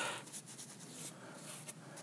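Faint, light strokes of a paintbrush applying white stain-and-sealer to planed pine timber.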